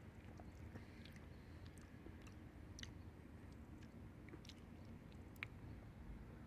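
Faint chewing of a bite of lemon cheesecake cookie, with scattered small mouth clicks.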